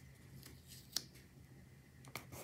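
Metal tweezers placing a small sticker on a paper planner page: one light, sharp click about a second in, over a faint steady low hum.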